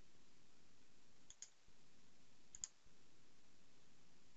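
Faint computer mouse clicks, two quick double clicks a little over a second apart, over near silence.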